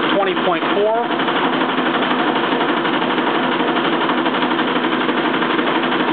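Motor-driven alternator of a home-built Bedini (Watson) machine spinning at speed: a steady, busy mechanical whir and chatter.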